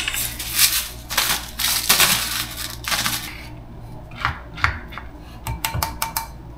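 A salt grinder being twisted over a bowl of rice, giving several short gritty grinding bursts in the first half. A paddle then stirs the rice, knocking against the bowl with a few light clicks.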